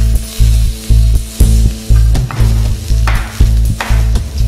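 Fish fillets sizzling as they fry in a pan, under background music with a steady bass beat of about two pulses a second.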